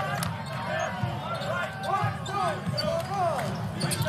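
A basketball being dribbled on a hardwood court, with short sneaker squeaks from players moving, over the murmur of an arena crowd.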